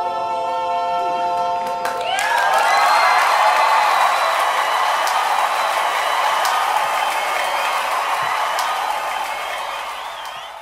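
Four-voice a cappella barbershop-style singing holding the song's final chord for about two seconds, then a live audience cheering and applauding.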